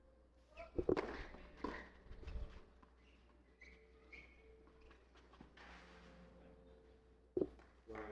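Tennis ball struck by racket on a clay court: the serve is hit just under a second in, the return comes soon after, and another sharp hit lands near the end. Quiet footsteps on the clay fill the gaps between.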